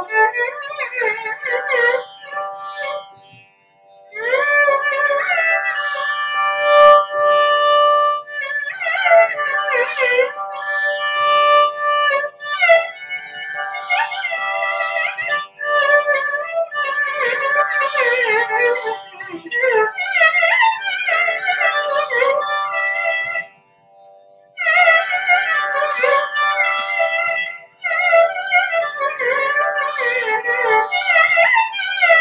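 Carnatic music: a violin plays gliding, ornamented melodic phrases, joined by the female vocalist, with two brief pauses between phrases.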